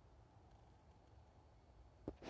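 Near silence: only faint, steady low background noise.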